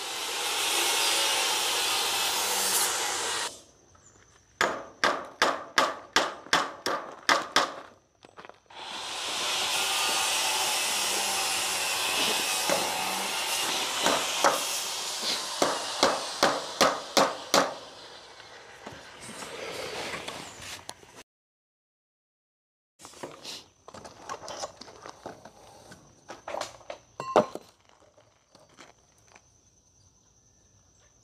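A hammer driving a small nail into the wooden post of a sand sieve frame to hold the cord in place: two runs of quick blows, about three a second, with steady rushing noise between them. A few lighter taps follow near the end.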